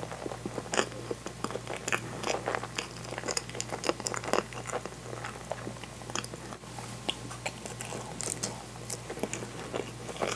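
Close-miked chewing of a mouthful of natto rice: a steady run of soft, irregular wet clicks and smacks from the mouth. A steady low hum sits underneath.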